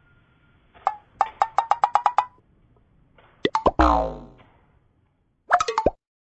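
Edited-in cartoon sound effects: a quick run of about eight short pitched pops, then a few clicks followed by a falling twang, and another short cluster of pops near the end.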